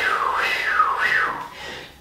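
A woman imitating the wind with her mouth, a breathy 'whoo' that falls and rises in pitch about three times and fades out near the end.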